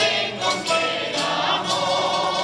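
Group of male voices singing together in chorus, accompanied by strummed guitars and other plucked string instruments of a folk string band, performing a habanera.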